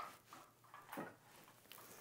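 Near silence, with a couple of faint soft taps and rustles from a cardboard shoebox being handled, one near the start and one about a second in.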